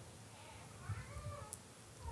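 Faint, high-pitched cries that glide in pitch, over quiet room tone.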